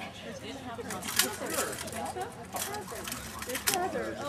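Rattan swords striking shields and armour in SCA heavy combat: four sharp cracks, the loudest about a second in, over people talking close by.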